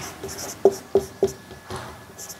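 Whiteboard marker squeaking and scratching on the board as letters are written, in a run of short separate strokes.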